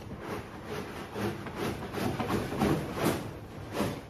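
Rustling and handling of a nylon hiking backpack as it is packed from the top, in a run of short, irregular scrapes and rustles.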